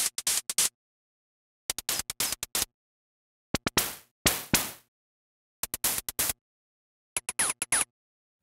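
Electronic hi-hat samples taken from a Moog DFAM analog percussion synth, played one after another in a drum machine plug-in. They come as short runs of quick, sharp ticks with dead silence between them, and the last run has a high, ringing tone.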